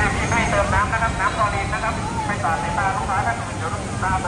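A nearby voice, fairly high-pitched, talking through most of the moment over a steady low rumble of outdoor crowd and city noise.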